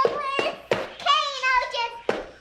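A young child's high-pitched voice, drawn out in long calls, with several sharp hand claps among them.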